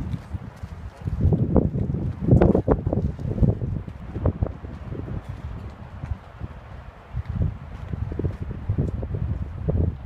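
Irregular low rumbles and knocks on a phone's microphone from handling and wind buffeting, heaviest a couple of seconds in, then settling into a lower rumble.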